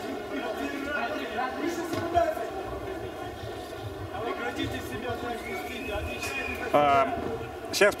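Indistinct voices echoing in a large arena hall, corner teams and officials talking during the break between rounds, with one short louder call just before the end.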